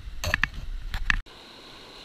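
Stones and gravel clicking and knocking as surface dirt is scooped from between river rocks into a plastic gold pan, over a low wind rumble on the microphone. Just over a second in this cuts off abruptly to a steady hiss of running river water.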